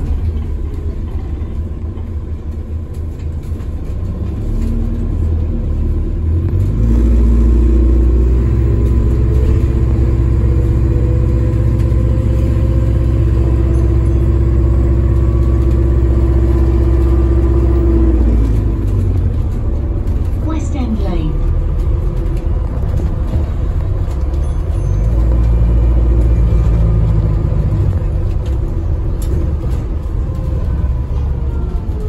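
Alexander Dennis Enviro400 MMC bus under way, heard from inside the passenger saloon: a steady low rumble of drivetrain and road. It grows louder about seven seconds in with a steady whine over it, eases back around eighteen seconds with a short falling tone, then builds again near the end.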